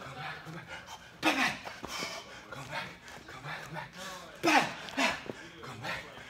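A man breathing hard and grunting with effort during a high-intensity cardio drill: loud voiced exhales come about once a second, the strongest near the start of the second and fifth seconds.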